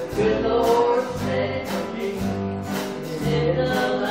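Gospel song: singing over instrumental accompaniment, with a bass line changing note every half second or so and short percussive strokes.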